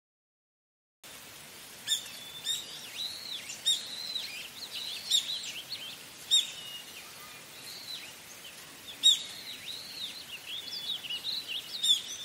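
Small birds chirping in quick, repeated high calls, starting abruptly about a second in after complete silence.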